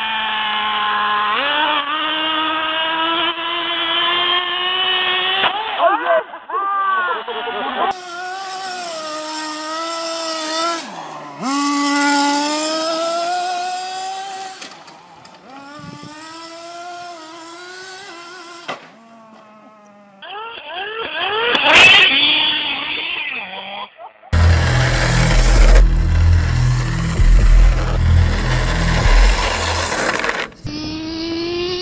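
Radio-controlled cars' motors revving, their whine rising and falling in pitch as they speed and slide, changing abruptly from one short clip to the next. There is a sharp crack about two-thirds of the way through, then a loud rough rumbling noise for the last few seconds.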